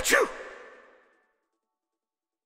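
A man's voice giving a short, theatrical sneeze sound in two parts, with an echo tail that fades away within about a second, followed by silence.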